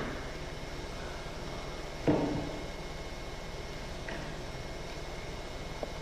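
Steady low hum and hiss of room tone. It is broken once, about two seconds in, by a short loud sound, and there is a faint click near the end.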